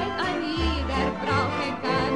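A lively stage song: a woman singing over a band, with bass notes about once a second.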